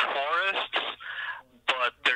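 Speech only: voices talking, with pitch sliding up and down in the first second and a short break shortly after the middle.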